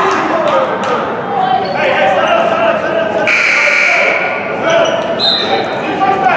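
Basketball gym sounds: spectators chattering, a basketball bouncing on the hardwood floor near the start, and about three seconds in a short, harsh scoreboard buzzer lasting just under a second.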